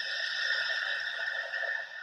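A swell on the film's soundtrack: a hissy, ringing tone that builds up, holds for about two seconds and fades away.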